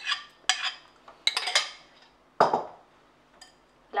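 A spoon scraping and clinking against a ceramic bowl as pear purée is scraped out into a pot: several sharp clinks in the first second and a half, then one duller knock about halfway through.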